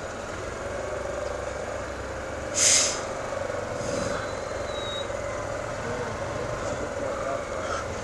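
Motorcycle engine running at low speed in slow, congested city traffic. About two and a half seconds in comes one short, sharp hiss, a bus's air brakes releasing.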